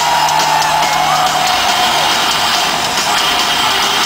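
Live metal band playing loud and steady through an arena sound system, with drum kit and electric guitars.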